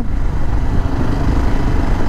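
KTM 690 Enduro R's single-cylinder engine running as the bike rides along at low speed, a steady sound with a heavy low rumble.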